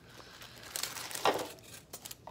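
Plastic packaging and tissue paper crinkling and rustling as craft supplies are handled and lifted out of a box.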